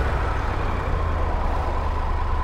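Triumph Tiger 1200 GT Explorer's three-cylinder engine idling steadily with the bike at a standstill, a low even rumble.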